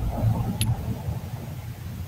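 Low rumbling background noise picked up through a voice-call microphone, opening with a soft thump, with a brief faint tick about half a second in.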